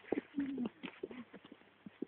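Faint footsteps and clicking steps on a paved path while walking a small dog, a quick irregular patter of light taps. A short low note sounds about half a second in.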